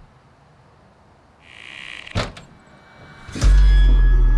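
A front door is pushed shut with a thud about halfway through, just after a short swish. Shortly before the end comes a click, followed at once by a sudden, loud, deep bass drone of music.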